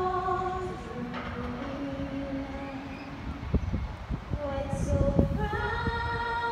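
A woman singing solo across the stadium, with held, sliding notes. In the middle her voice drops to a low held line, and gusts of low thumping hit the microphone before the singing comes back near the end.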